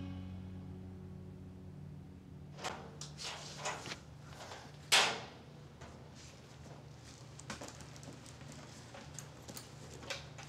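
Soft background music fades out over a steady low room hum. A few light footsteps follow, then one loud, sharp metallic clank of a steel locker door about five seconds in, then faint clicks and rustling.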